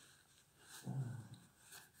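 Faint rubbing of a hand pressing on denim jeans, with one short, low murmur about a second in.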